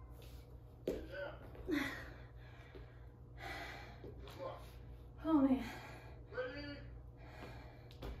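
A woman breathing hard and gasping from the exertion of burpees, with short voiced exhalations between breaths. A single sharp knock sounds about a second in.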